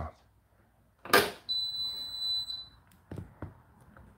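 Hotpoint NSWR843C washing machine being started: a sharp click as the start button is pressed about a second in, then a single high-pitched beep lasting about a second. A couple of short clicks follow near the end as the door lock engages for the 40 °C cycle.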